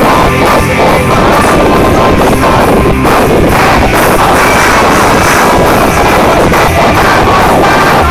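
A live rock band playing loud: electric guitars, bass guitar, drums and saxophone in a full, dense wall of sound that holds steady at a near-maximum level throughout.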